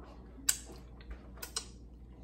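Mouth sounds of eating: a few short wet lip smacks and clicks, the sharpest about half a second in and two more close together about a second and a half in.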